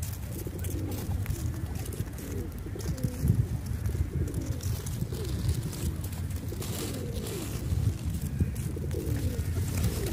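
A flock of feral rock pigeons cooing, several birds overlapping in a continuous run of low coos that rise and fall.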